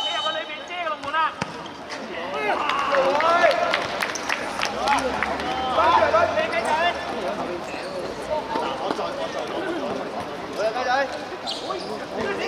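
Men's voices shouting and calling on a futsal court, with several sharp thuds of the futsal ball being kicked and bouncing in the first half.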